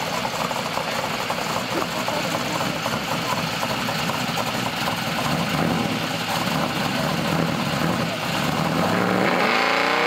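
Drag-prepared second-generation Chevrolet Camaro's engine idling with an uneven, pulsing rumble. It starts revving up near the end.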